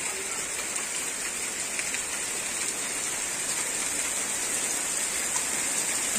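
Heavy rain falling steadily on wet ground and puddles, an even, constant hiss.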